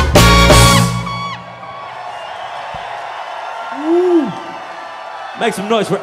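A funk band's last held chord rings and stops about a second in. Crowd noise follows, with one whoop that rises and falls.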